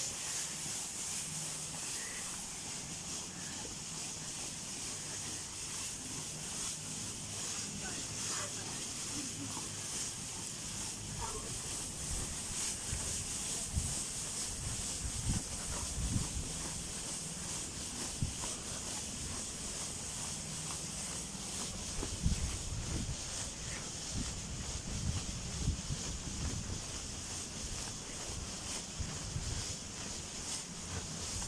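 Steady high hiss of an inflatable costume's battery-powered blower fan keeping the suit inflated. From about halfway through, irregular low thumps from footsteps or handling are added.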